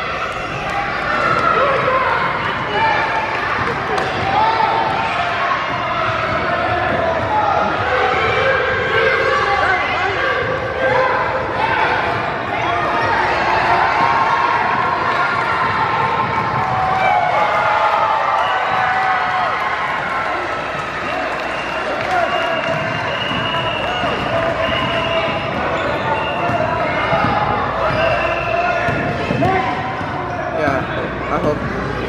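Basketballs bouncing on a hardwood gym court during a youth basketball game, amid a steady din of many overlapping voices from players and spectators, echoing in a large gym.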